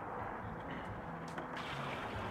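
Water poured steadily from a five-gallon bucket into a plastic drum partly filled with wood-chipped charcoal.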